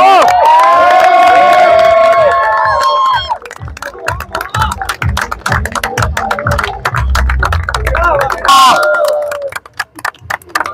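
A group of people cheering and shouting together, with long held yells for the first three seconds, over music with a steady beat. Another drawn-out shout comes near the end.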